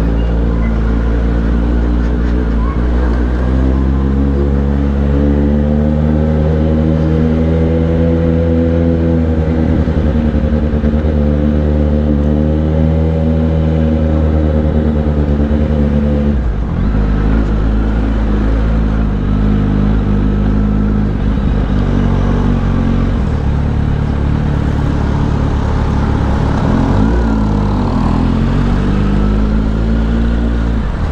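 Kawasaki Z900's inline-four engine with an aftermarket exhaust, ridden at low speed and heard from the rider's seat. It holds a steady note for about the first half, drops suddenly about halfway through, then rises and falls with the throttle.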